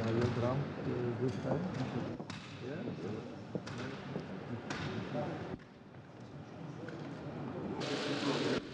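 Indistinct voices talking in a large room, with a few sharp clicks and knocks; after about five and a half seconds the sound drops to a quieter steady hiss.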